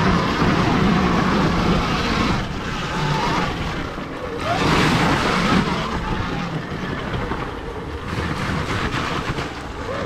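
Sur-Ron Ultra Bee electric dirt bike ridden along a forest dirt trail: a loud, noisy rush of tyres, chain and drivetrain, with no engine note. It swells about a second in and again around five seconds in.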